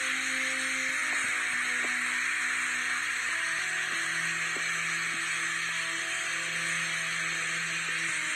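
Slow background music of sustained, held notes that change every few seconds, over a steady hiss.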